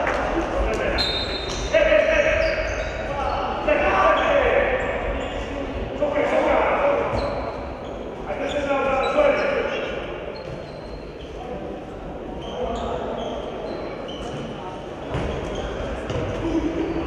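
Indoor handball game in a large, echoing sports hall: the ball bouncing on the wooden floor, short high shoe squeaks, and players calling out.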